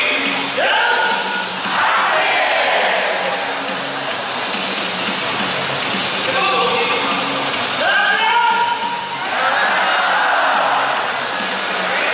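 Stadium public-address music for the player introductions, with a steady repeating bass line. A rising swoop comes in twice, just after the start and again around eight seconds, and each is followed by a swell of crowd voices.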